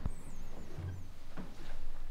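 Faint, high-pitched wavering squeaks in the first second, over quiet handling noise.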